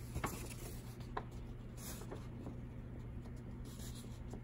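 A sheet of paper being unfolded and handled, with a few soft rustles and light crinkles over a low steady hum.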